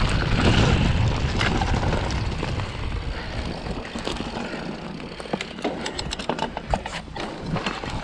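Mountain bike riding fast down a dirt woodland trail: wind buffeting the camera microphone with a low rumble and tyre noise, easing off after the first few seconds. Through the second half come many sharp, irregular clicks and rattles from the bike over rough ground.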